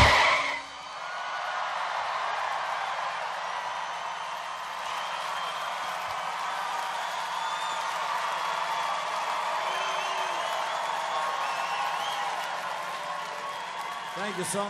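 A band's last chord cuts off right at the start, then a large crowd cheers and applauds steadily, with a few whistles rising above it.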